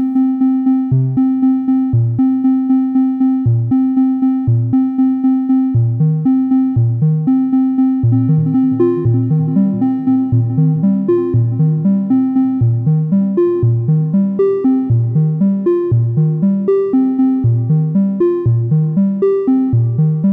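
Software modular synth (VCV Rack) voice playing a quantized step sequence from the PathSet Glass Pane sequencer: short pitched notes about three a second over a steady held tone. The step range is set to six octaves, and from about six seconds in the notes leap over a wider span of pitch.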